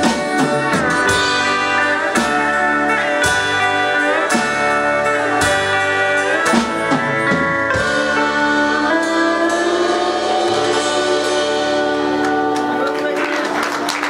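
Live country band playing the instrumental close of a song on electric and acoustic guitars, pedal steel guitar and drums, ending on a long held chord that thins out about twelve seconds in. A voice starts talking as the chord fades.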